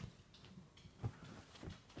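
Faint footsteps on carpet: soft, dull thuds, the clearest about a second in and another a little later.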